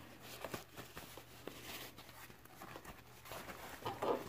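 Faint rustling of a soft neoprene binocular pouch and its paper packing being handled, with a few light clicks.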